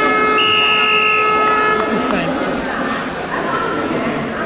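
Wrestling-mat timing buzzer sounding a steady electronic tone for about two seconds, then cutting off, over arena chatter. It is typical of the buzzer that ends a period or bout.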